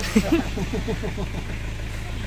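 Car engine idling, heard from inside the cabin as a steady low hum. Faint voices sound over it for about the first second and a half.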